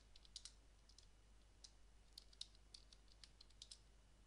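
Faint, irregular keystrokes on a computer keyboard as a line of text is typed, some coming in quick little runs.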